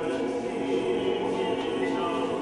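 Male opera chorus singing with orchestral accompaniment, holding sustained chords.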